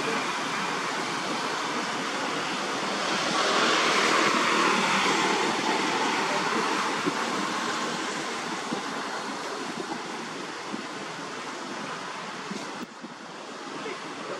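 Steady outdoor rushing noise, like wind through trees, that swells a few seconds in and slowly eases off, with a short dip near the end.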